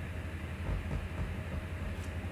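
A man chugging a bottle of beer, faint swallowing gulps over a steady low background rumble.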